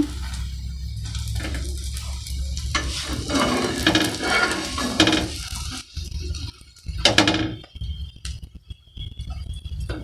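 Steel spatula scraping and clinking against a flat iron tawa as the sides of an omelette are folded over the bread, with a light sizzle of egg frying in oil.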